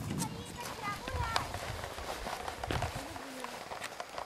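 Faint, distant voices over light outdoor background noise, with a few sharp clicks.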